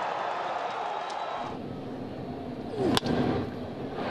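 Ballpark crowd noise that cuts off about a second and a half in to a quieter stadium background; about three seconds in, a single sharp crack of a wooden bat hitting a baseball.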